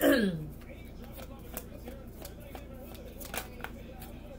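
A tarot deck being shuffled and handled by hand, giving a string of irregular light card clicks and snaps. A brief bit of voice comes right at the start.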